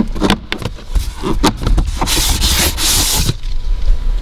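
Plastic trim panel under a glove box being pushed up into place by hand: several sharp clicks and knocks as its clips push in, then about a second of scraping halfway through.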